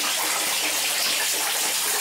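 Water pouring steadily: an even rushing hiss.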